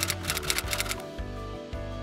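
Typewriter keystroke sound effect, a rapid run of clicks about seven a second that stops about a second in, over soft background music with sustained tones.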